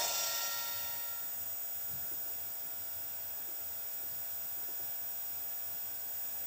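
Steady low hiss and hum from a VHS tape playing a blank stretch between trailers, heard through a TV speaker; a faint tone fades out about a second in.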